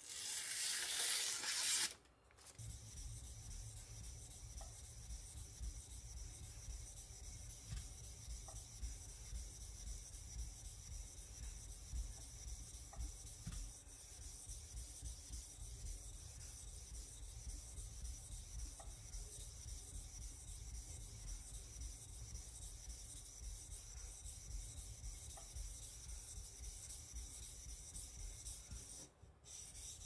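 A sashimi knife's steel blade being stroked back and forth on a wet whetstone, a steady scraping rub. It is opened by a short, louder burst of noise lasting about two seconds.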